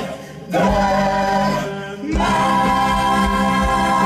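Mixed chorus of men's and women's voices singing in full chords, with two short breaks between phrases, then holding one long chord through the second half.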